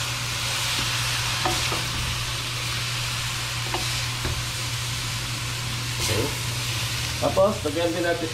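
Yardlong beans and pork sizzling in a stainless steel wok as they are tossed with two wooden spatulas, with a few light taps of wood on the pan.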